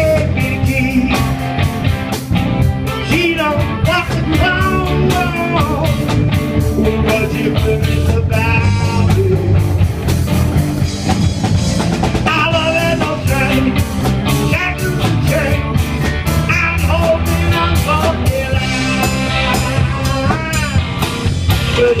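Live blues-rock band playing an instrumental break between verses: drum kit, bass and electric guitars, with a lead line that bends and slides in pitch over the groove. Loud and steady throughout.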